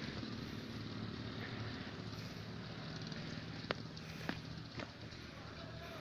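Motorbike engine running with a steady low hum, with three sharp clicks about midway.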